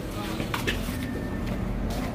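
Parking-garage background: a steady low rumble with a few faint clicks about half a second in and faint muffled voices.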